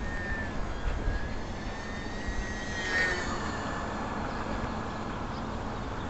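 Small electric RC airplane's motor and propeller whining in flight: a thin high tone that wavers in pitch and is loudest about three seconds in. Low wind rumble on the microphone underneath.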